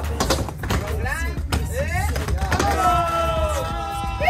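Hip-hop music track with rapped and sung vocals over a steady bass beat; near the end a sung note is held for about a second.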